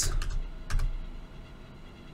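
A few keystrokes on a computer keyboard in the first second, fading to quiet room tone.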